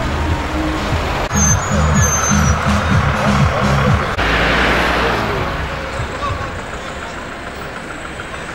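Street sound with road traffic, under background music: a vehicle goes by a little after the middle and the sound then fades away.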